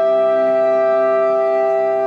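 Galician traditional folk band of clarinets, bagpipe and accordion holding one long chord, with no drumbeats.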